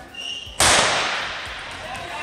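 A starting pistol fires once for the start of a 400 m race, a single sharp crack that rings on through a large indoor hall for about a second. A brief high-pitched tone comes just before it.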